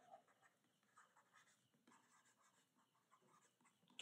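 Near silence, with faint scratching and tapping of a pen stylus writing by hand on a tablet.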